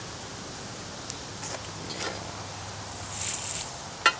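Faint light scraping of solder wire rubbed along a hot soldering iron tip, with a few small ticks and a brief soft hiss a little after three seconds, over a steady low hum.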